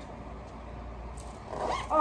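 A dog gives a short, high whine that rises and falls, near the end.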